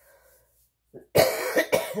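A woman coughs twice, two harsh coughs a little over a second in, after a second of quiet.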